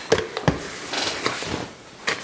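A few light clicks and knocks from a plastic mixing tub being handled and lifted off a digital scale, with a soft scuffing rustle about a second in.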